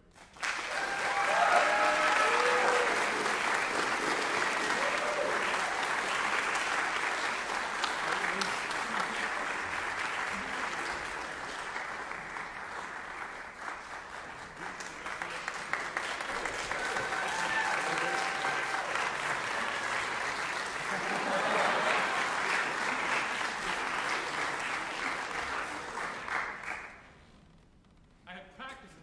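Audience applauding in a recital hall, starting suddenly, easing off about halfway, then swelling again before stopping abruptly near the end. A few voices call out near the start and again past halfway.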